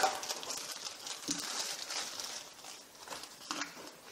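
Thin plastic bag rustling and crinkling as it is handled and opened, with small scattered clicks. It is loudest at the start and fades to faint handling noise.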